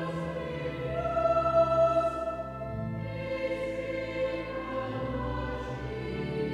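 Cathedral choir of boy trebles and men singing, holding long notes that move to new chords every two seconds or so.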